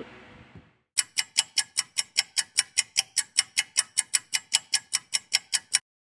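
Rapid, even ticking sound effect, about five clicks a second, starting about a second in and cutting off suddenly near the end.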